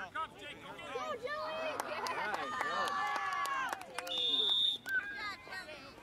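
Several voices overlap and call out at once, building about a second in, with no clear words. About four seconds in, a referee's whistle gives one short, steady, high blast.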